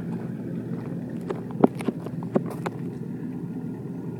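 A truck engine idling steadily, with a few short sharp knocks in the middle second or so.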